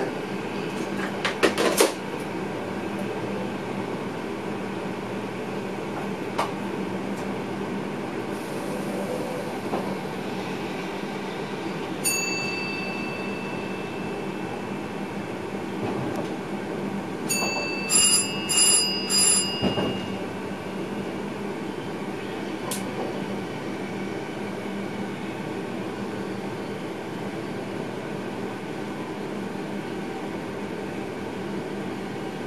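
Steady running noise inside the driver's cab of an electric passenger train moving along the track at reduced speed, with a low hum and rumble and a few clicks near the start. About twelve seconds in, a single clear electronic chime sounds and fades. Around eighteen seconds, a quick run of four ringing alert tones sounds in the cab.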